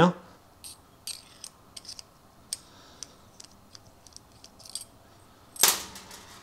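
Faint, irregular small metal clicks and ticks of a needle-packing tool turning the packing screw out of the metal body of a cheap double-action airbrush. A short, louder rush of noise comes near the end.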